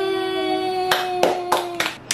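Hands clapping about five times, starting about a second in, over a held musical note.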